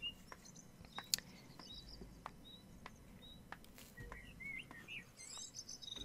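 Faint birdsong ambience: a scattering of short chirps, some rising in pitch, with a few soft clicks in between.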